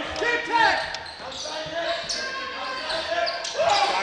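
A basketball being dribbled on a hardwood gym floor, several bounces ringing in a large hall, with players' voices calling out over it.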